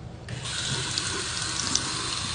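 Bathroom sink faucet starting to run about a quarter second in, then a steady stream of tap water splashing onto a compressed sponge and into the basin.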